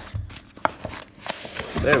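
Cardboard and paper rubbing and scraping as a taped shipping box is opened by hand and its packing pulled out, with a couple of sharp clicks.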